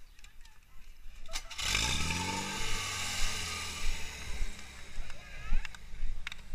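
Portable fire pump engine suddenly revving up about a second and a half in, its pitch climbing and then holding at high revs, with a loud rushing hiss over it. A sharp click comes just before the run-up.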